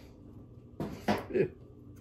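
A man's brief murmured voice sound, about a second in, over faint handling noise at a table.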